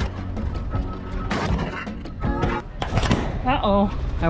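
Scrap metal pieces clattering and knocking as they are thrown down onto a scrap pile, over a steady humming tone; near the end a woman's voice exclaims as the camera on the ground is knocked over.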